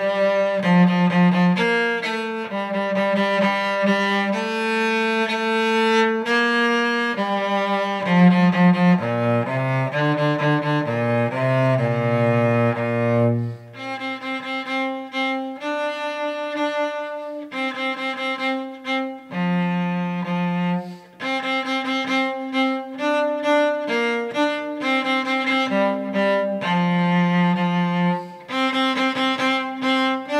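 Solo cello played with the bow: a ragtime tune as a single melody line of short and longer notes. About a third of the way in it drops to low notes, ending on a longer held low note, then moves up to a higher register with quicker, detached notes.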